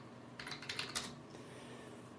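Faint computer keyboard keystrokes: a short, quick run of key presses about half a second in, lasting about half a second, as a command is typed and entered at a Linux terminal.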